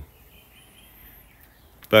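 Faint outdoor garden ambience with a faint, thin high bird call in the first half, then a man's voice starts right at the end.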